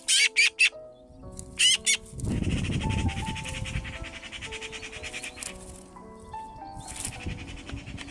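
Young Eurasian magpies in the nest calling: three short harsh squawks in the first second, two more soon after, then a longer rasping call lasting about three seconds, and one more call near the end, over background music.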